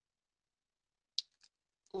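Near silence with a single short, sharp click just over a second in.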